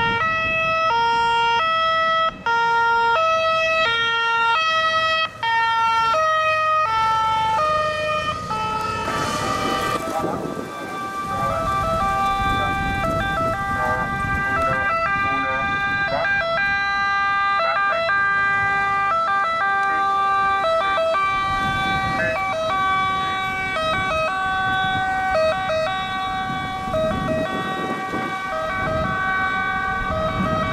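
Two-tone emergency-vehicle sirens, the Italian high-low alternating kind, on ambulances arriving with lights on. One siren alternates steadily for about the first nine seconds, then a second, higher-pitched two-tone siren takes over, over a low vehicle rumble.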